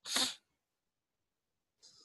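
A person's single short, sharp burst of breath close to the microphone, lasting under half a second, followed near the end by a faint breath.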